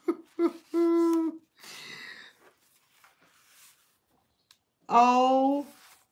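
A woman laughing and making wordless vocal sounds: short chuckles at the start, a steady held hum about a second in, and a breathy laugh. A long falling 'oh' comes near the end.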